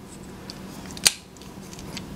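A single sharp plastic click about a second in, from the clasp of a Taisioner neck mount being worked by hand, with a fainter tick shortly before it.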